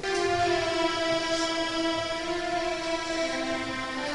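Sustained chord held on a keyboard instrument, steady and unwavering, with a lower note coming in about three seconds in.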